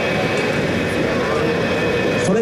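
Two F-15J fighters' F100 turbofan engines running on the runway just before a two-ship formation takeoff: a loud, steady jet noise with a steady high whine.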